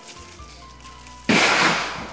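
A single loud rifle shot about a second and a quarter in, cracking on suddenly and fading away in a long echo.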